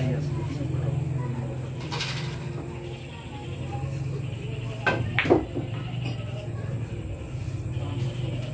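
A pool shot: the cue tip strikes the cue ball, and about half a second later the cue ball clicks sharply into an object ball. Both clicks sit over a steady low hum and background murmur.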